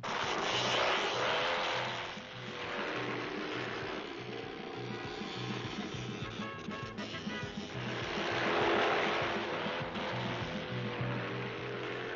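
Ice speedway motorcycles racing, their engines running at high revs. The sound swells louder about a second in and again about eight to nine seconds in, with music mixed underneath.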